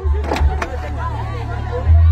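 Crowd voices shouting over a steady low rumble, with two sharp clattering knocks about a third of a second apart near the start as wooden planks are thrown onto a pile of broken furniture.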